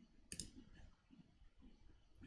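Near silence broken by a faint sharp click about a third of a second in, from someone clicking at a computer.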